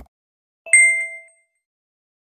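Subscribe-button animation sound effect: a brief click, then, about three-quarters of a second in, a bright bell-like ding that rings out for under a second.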